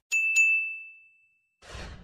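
Notification-bell 'ding' sound effect from a subscribe-button animation: a couple of quick clicks, then one clear ringing tone that fades over about a second. Near the end, a short whoosh.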